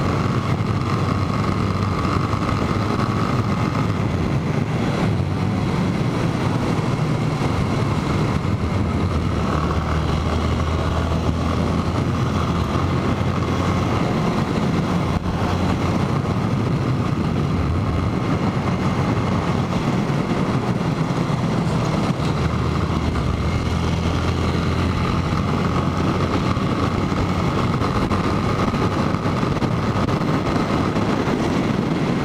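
Motorcycle engine running steadily at cruising speed, heard from the rider's own bike, with wind rushing over the camera microphone.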